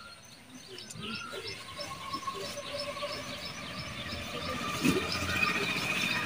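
A bird chirping repeatedly outdoors, short high calls about three a second, over steady background noise, with a single knock about five seconds in.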